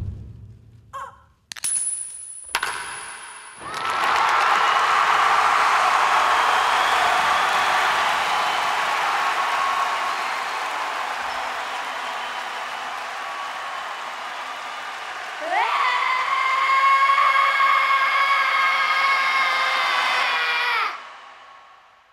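Theatre sound effects over the stage sound system. A sharp crack with a high ringing tone comes about two seconds in. From about four seconds a loud, hissing, roar-like wash slowly fades. Near fifteen seconds a tone with several pitches together rises, holds steady for about five seconds, and cuts off.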